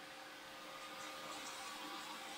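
Faint room tone: a steady low hiss with a faint hum, with no distinct sounds standing out.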